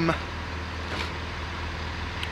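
Steady low hum and rumble of railway-station background noise, with a faint tick about a second in.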